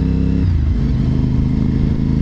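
Honda RC51 (RVT1000R SP2) 1000cc V-twin motorcycle engine running under way. Its note drops about half a second in, then holds steady.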